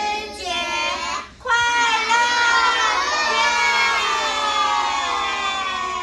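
A class of young children shouting together in unison. Their voices break off briefly about a second and a half in, then carry on in one long drawn-out shout.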